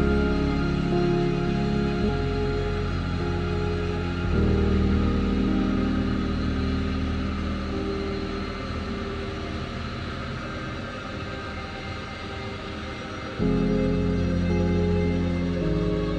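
Background music of slow, sustained chords that change every few seconds. A long held chord slowly fades through the middle, and a new, louder chord enters near the end.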